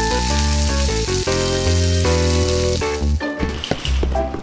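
Background music with a steady bass line, over a frying sizzle sound effect for a toy deep fryer of fries. The sizzle fades about three seconds in, and a few light clicks follow.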